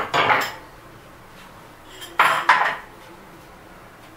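A tray lined with baking paper being handled: two short clattering, rustling knocks, about two seconds apart.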